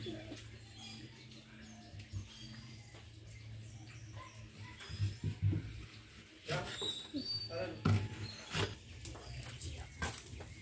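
Quiet handling sounds of an onion being cut by hand with a knife: a few scattered soft knocks and clicks, most of them in the second half. Faint bird chirps and a low steady hum lie underneath.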